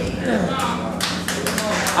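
Scattered hand claps from an audience, starting about a second in and coming irregularly, mixed with voices in a large room.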